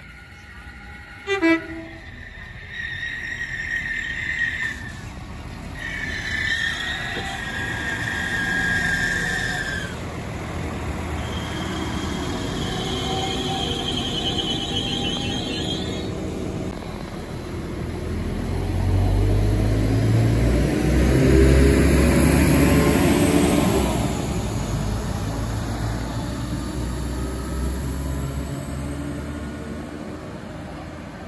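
Passenger train running through the station on overhead-wired track. There is a short sharp sound about a second and a half in, then long high steady tones through the first half. A loud rumble of the train on the rails builds to its peak about two thirds of the way in and then eases off.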